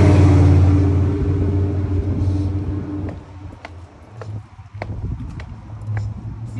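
A car passing close by on the road, its engine and tyre hum loud at first and fading away over about three seconds. Afterwards a few light footstep clicks on the concrete sidewalk.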